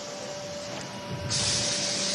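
Steady background hiss with a faint steady tone in it. A louder, higher-pitched hiss comes in a little past halfway and carries on.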